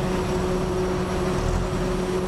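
Steady drone of a jet airliner's engines, an even rush with a constant low hum.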